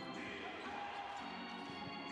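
Steady basketball-arena sound during live play: crowd noise with faint arena music, and a basketball being dribbled on the hardwood court.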